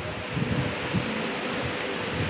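A pause in a man's speech: steady room noise picked up by the lectern microphone, with faint low rustles.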